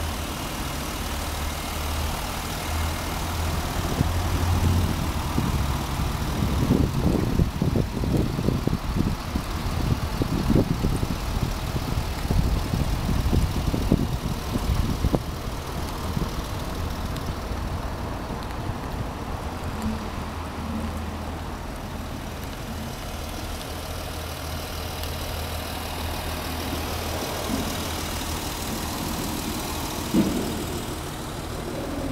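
A car engine idling steadily, a low hum. Gusts of wind rumble on the microphone for several seconds in the middle.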